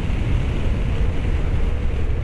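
Motorcycle riding at road speed: a steady rush of wind over the mounted camera's microphone, with the engine's running sound underneath.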